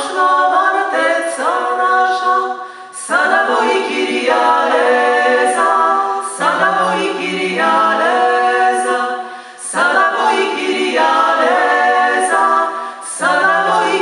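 Three women singing a cappella in close harmony, in repeated phrases of about three seconds with short breaths between them.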